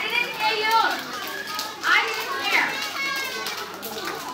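A crowd of young children's voices calling out and chattering at once, high-pitched and overlapping, with a couple of louder rising calls about two seconds in.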